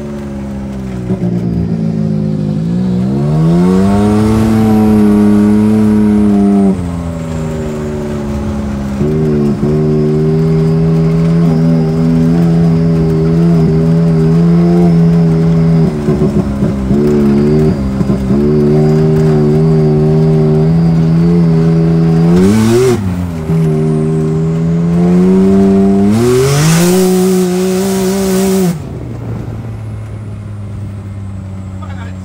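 Side-by-side UTV engine running under throttle while driving, its note climbing and holding steady, then dropping off and climbing again several times as the throttle is let off and reapplied. A short rush of hiss comes in near the end, at the highest engine note.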